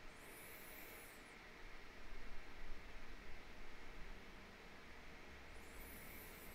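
Faint room tone: a steady low hiss, swelling slightly for a moment in the middle.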